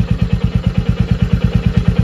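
Royal Enfield motorcycle engine idling steadily, with an even, rapid beat.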